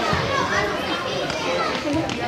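Several children's voices calling out and shouting over one another during a youth soccer game.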